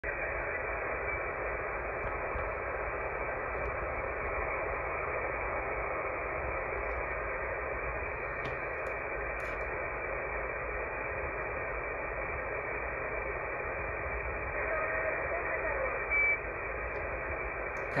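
AM radio reception of a taxi cab dispatcher on 26.765 MHz through a web SDR receiver: steady static with a faint female operator's voice under it, ending in a short roger beep about 16 seconds in that marks the end of the transmission.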